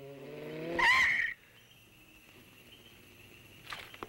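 Cartoon jeep engine revving up, rising in pitch, and ending in a short loud screech about a second in. After that there is only a faint steady tone, with a couple of small clicks near the end.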